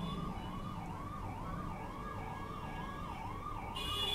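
Faint emergency-vehicle siren sounding in the background, its pitch sweeping up and down in a fast repeating cycle, a little over two cycles a second.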